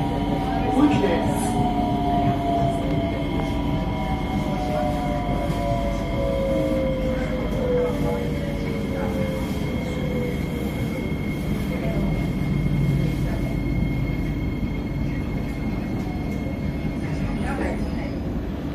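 SMRT C151A metro train's traction motors whining in a falling pitch as the train slows into a station, the whine fading out about ten seconds in. Under it are the steady rumble of the carriage and a steady high electrical hum.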